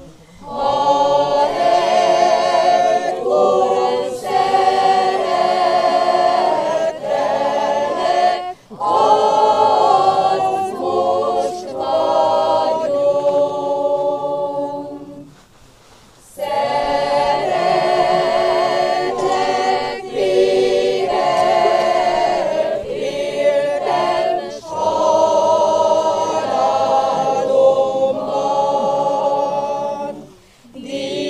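Mixed church choir of women and men singing a funeral hymn a cappella, line by line, with short breath breaks between phrases and a longer pause about halfway through.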